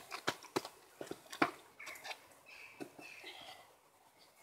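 A few sharp clicks and taps in the first second and a half, then faint high-pitched sounds near the middle.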